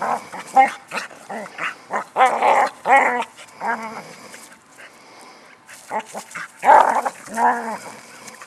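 Border collie giving many short, quick barks and whines, with a gap of about a second and a half in the middle and the loudest calls near the end.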